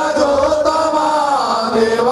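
A male voice singing a devotional Ayyappa chant into a microphone, holding long notes that bend slowly in pitch and dip near the end.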